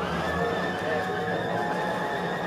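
Background music with held notes and a sliding, wavering melody line.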